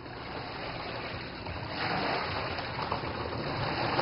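Steady wash of water, swelling briefly about two seconds in.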